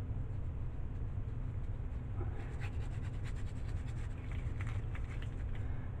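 Faint scratchy rustling of gloved fingers working over the soap top, setting in about two seconds in, over a steady low hum.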